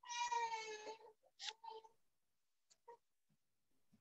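A cat meowing: one drawn-out high meow about a second long, falling slightly in pitch, followed by a couple of short, fainter sounds.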